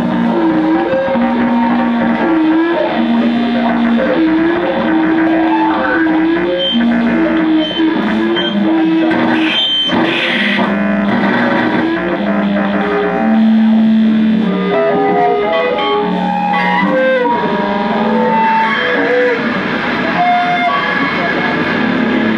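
Two electric guitars played live through effects pedals in a noise-rock improvisation: held notes that bend and slide over a dense, distorted layer, with a sharp crackle about ten seconds in.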